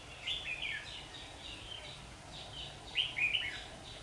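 Red-whiskered bulbuls singing short, clear warbled phrases in two bursts, about half a second in and again about three seconds in.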